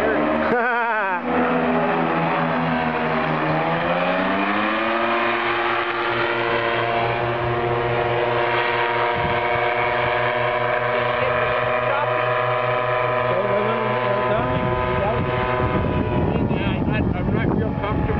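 Parajet Cyclone paramotor's engine and propeller droning overhead in flight. The pitch wavers in the first second, rises steadily a few seconds in as the engine speeds up, then holds steady. Near the end the drone fades under wind noise on the microphone.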